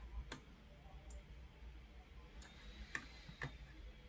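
A handful of faint, sharp clicks, irregularly spaced, from a computer mouse used to click and scroll through a code file.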